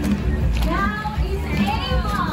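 High-pitched children's voices calling and chattering over loud background music with a heavy low end.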